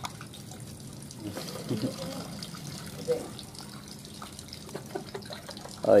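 Steady sound of running water, with faint voices now and then.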